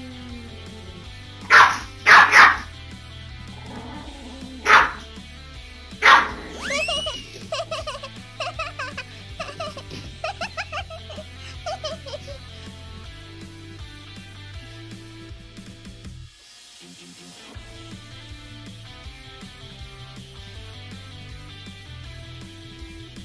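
Chihuahuas barking in a play fight: five sharp, loud barks in the first six seconds, then a quicker string of high yips and whines that dies away about halfway through, over background music.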